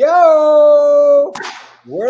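A long, drawn-out cheering whoop from a person's voice: it rises, then holds one pitch for about a second. A short breath follows, then a second rising whoop starts near the end.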